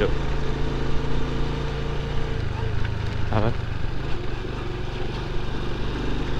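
Small 110 cc cub-style motorcycle engine running steadily while riding on a sandy dirt road, heard from the rider's seat; the engine note shifts about halfway through.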